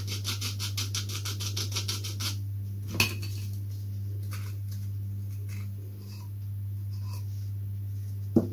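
Fine glass paper on a small balsa sanding stick rubbing quickly back and forth on a balsa former, a rapid even scraping for about two seconds. Then a single sharp click and light handling of small balsa parts, with a low steady hum beneath.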